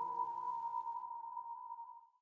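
The final note of an electronic dance track dying away: a single high held tone fading out over about two seconds, with a faint echoing wash beneath it.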